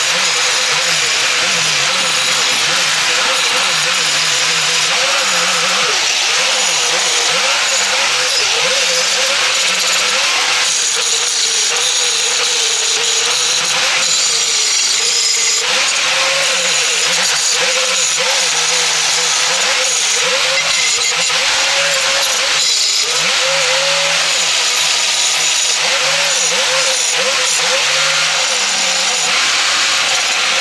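Electric angle grinder running against steel for the whole stretch, a dense hiss under a motor whine that wavers in pitch as the load on the disc changes.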